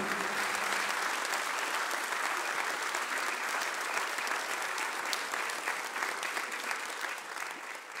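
A large audience applauding, dense clapping that slowly dies away toward the end.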